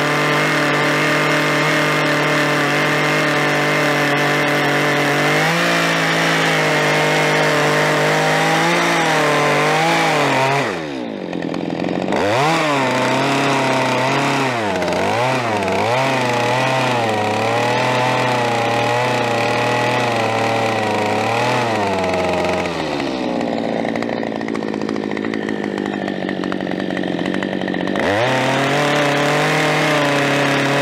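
Two-stroke chainsaw running at high throttle while cutting into a squared log, its engine pitch wavering and dipping as the bar loads in the wood. About eleven seconds in the revs drop sharply and climb back, later the engine runs lower for several seconds, and near the end it revs back up.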